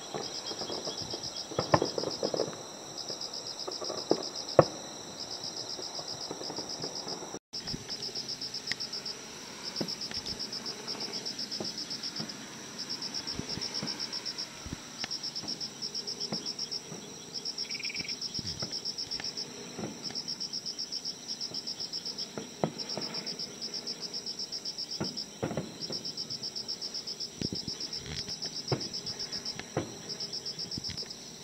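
Crickets chirping in steady trains of rapid high pulses with short pauses between them, while distant fireworks bursts go off now and then as sharp thuds, the loudest two a few seconds in.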